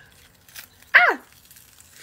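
A single short yelp about a second in, sliding steeply down in pitch.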